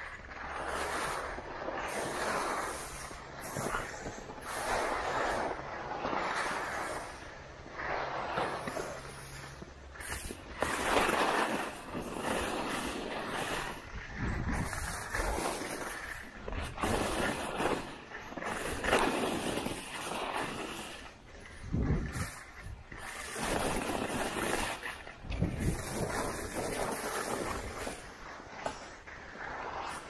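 Skis and poles working on packed snow: a steady rhythm of swishing, scraping strides about once a second, with a few heavier thumps in the second half.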